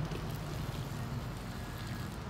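Thin stream of water running out of the opened high-side bleed valve of a backflow test kit's differential pressure gauge: a steady, faint hiss, with a low steady hum underneath.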